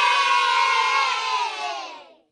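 A group of children cheering together, one long shout that slowly falls in pitch and fades out near the end.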